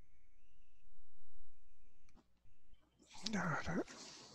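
Quiet room tone with a faint, thin steady whine, then a short murmured vocal sound a little over three seconds in.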